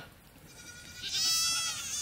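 A goat bleating once, a single drawn-out call that starts about half a second in and lasts well over a second.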